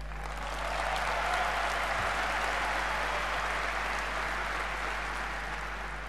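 Audience applauding, swelling over the first second and tapering off near the end.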